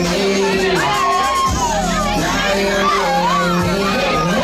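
Crowd shouting and cheering over loud music with held bass notes.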